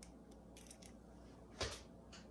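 Faint room tone in a kitchen, broken once about one and a half seconds in by a single short knock as kitchenware is handled on the countertop.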